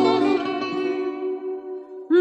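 Fado song: a woman's held sung note ends just after the start, and the plucked guitar accompaniment rings on, fading toward the end.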